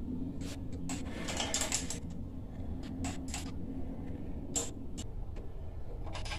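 Scattered light metallic clicks and taps of a wrench working at a stuck mounting bolt that holds a pressure washer pump to its engine's input shaft.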